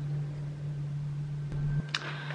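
Steady low room hum. Near the end, a brief low rumble and a click as the camera is handled.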